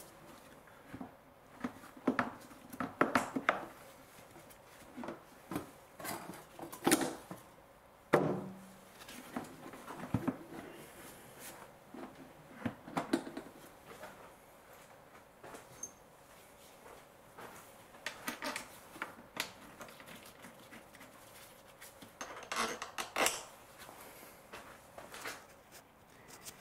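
Plastic air filter housing being handled and pushed back into place: irregular clicks, knocks and rattles of hard plastic, the loudest knock about eight seconds in.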